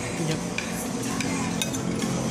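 Clatter of dishes and cutlery: scattered light clinks over a rustling hiss, with low steady music notes coming in about halfway through.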